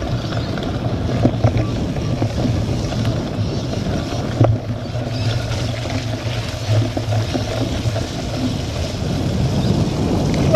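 Cyclocross bike being ridden over muddy grass: a steady rumble of tyres and frame rattle over the rough ground, mixed with wind on the camera's microphone, and a couple of sharp knocks from the bike.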